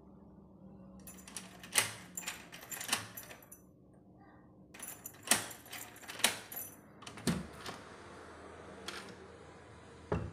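A newly fitted lever-handle door lock being tried out: metallic clicks and clacks of the latch and lock mechanism, with a key bunch jangling in the cylinder, in two short bursts of several sharp clicks.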